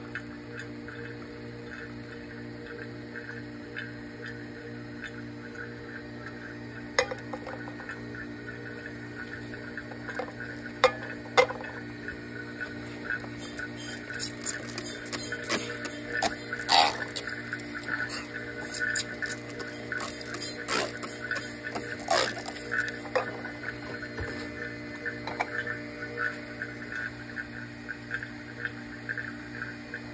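Vacuum pump running with a steady hum under a vacuum filtration, while liquid is poured into a Büchner funnel and drains into the flask. Scattered clinks and drips of glassware, most of them between about 13 and 23 seconds in.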